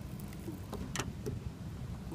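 A few light clicks and taps as fingers press and adjust a chrome car emblem against the painted trunk lid, the clearest about a second in, over a steady low rumble.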